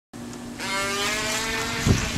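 Megatech H2O RC boat's small electric motor whining, its pitch rising as it speeds up, with a low thump near the end.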